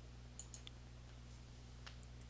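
Faint computer mouse clicks, a couple about half a second in and one near the end, over a low steady hum.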